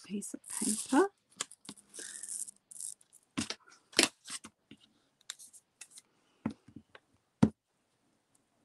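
Cut-out paper collage shapes being lifted off a sheet of card and handled on a tabletop: scattered paper rustles and light taps, several loud short ones about three and a half, four and seven seconds in.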